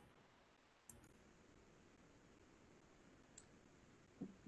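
Near silence: faint room tone, broken by two faint clicks, one about a second in and one near the end.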